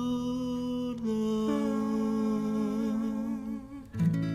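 A singer humming long held notes in an acoustic song, moving to new pitches about one and one and a half seconds in, then fading away near the end.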